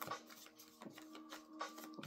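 A deck of cards being shuffled by hand: soft, irregular clicks and slaps of the cards, faint, over faint steady tones.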